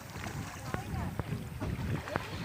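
Wind buffeting the phone's microphone in an uneven low rumble, with faint voices talking in the background.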